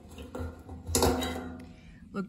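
Plastic fuel strainer screen being pulled out of a generator's fuel tank filler neck, with a sharp click about a second in.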